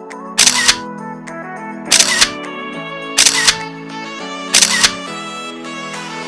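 Background music with four camera shutter clicks, evenly spaced about a second and a quarter apart, each a quick double snap.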